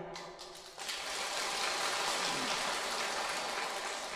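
Applause from a seated audience: many hands clapping in an even, steady wash that starts about a second in.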